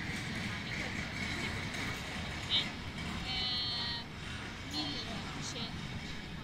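Outdoor town-square ambience: a steady low rumble of traffic under indistinct voices of passers-by. A few short high-pitched calls come through, the longest about halfway through.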